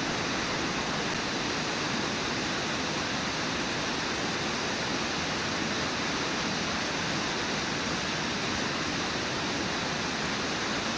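Steady rush of river water pouring over falls and through rapids, an even, unbroken noise with no other sounds standing out.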